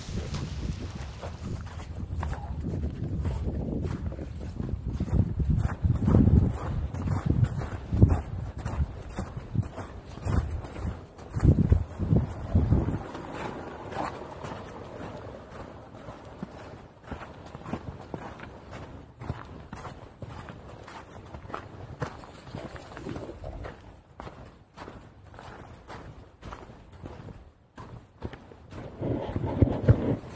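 Footsteps of a hiker walking along a snowy woodland path, picked up by a body-worn action camera as low, irregular thumps and rustles. The thumps are loudest around a quarter to nearly halfway in.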